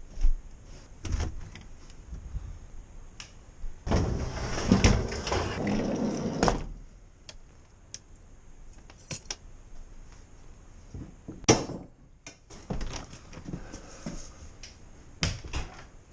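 Handling and movement noises as a person carries a camera through a house: scattered knocks and clicks, a longer rustle about four seconds in that stops about two and a half seconds later, and a sharp click near the twelve-second mark.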